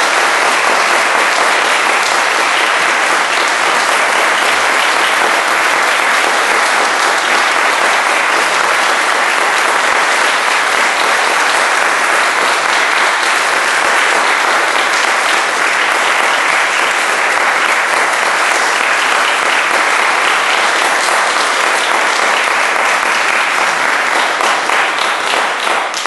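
Concert audience applauding, steady and sustained.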